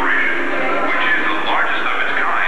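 Voices talking over background music, with no sharp sounds, dull and muffled with no high end.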